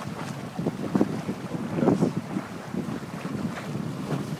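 Wind buffeting the microphone over water washing along the hull of a small sailboat under sail, rising in irregular gusts, loudest about one and two seconds in.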